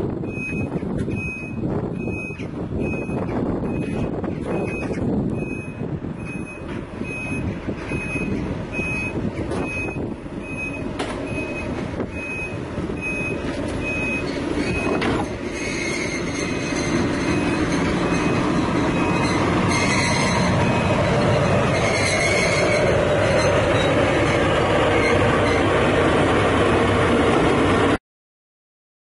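Diesel shunting locomotive (PKP SU42) engine running as it approaches, growing steadily louder. A high beep repeats at an even pace through the first half.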